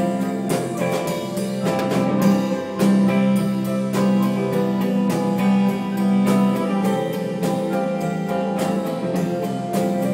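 Live band playing: a drum kit keeping a steady beat under keyboard and guitar chords.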